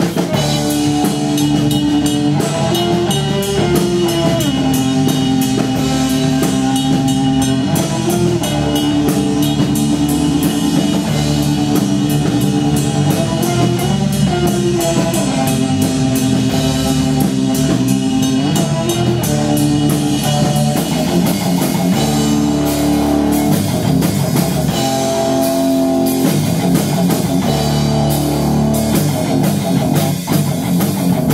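Live rock band playing: electric guitar, bass guitar and drum kit, loud and steady, with a riff that repeats every few seconds over a driving drum beat.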